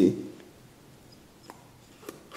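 A faint single click about a second and a half in, from a screwdriver working the air-control plate inside a small carburetor's bore; otherwise quiet.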